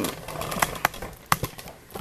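Handling noise: low rustling with about four light, sharp clicks in the middle second.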